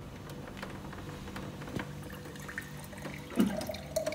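Water running from a water dispenser's tap into a drinking glass as it fills, with a brief louder sound about three and a half seconds in.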